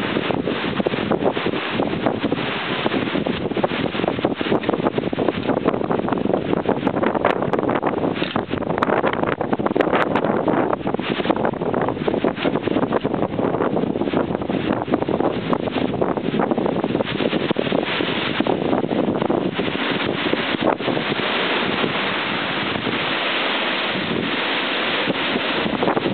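Strong storm wind buffeting the microphone: a loud, continuous rush, pretty impressive.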